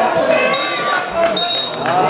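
A referee's whistle gives two short high blasts over shouting from players and spectators, with a couple of dull ball-kick thuds. A longer blast follows just after: the short-short-long pattern that signals full time.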